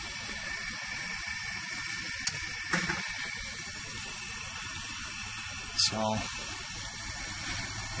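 Three-burner propane camp stove burning, a steady hiss of gas and flame.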